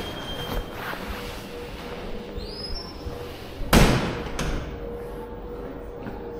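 Steady room tone of a large indoor hall with a faint hum, broken by one loud thump about four seconds in and a lighter click just after it.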